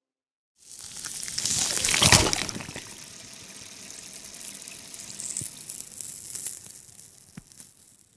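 A rush of water-like noise that starts about half a second in, swells to its loudest about two seconds in, then runs on more evenly and fades out near the end, with a few faint clicks.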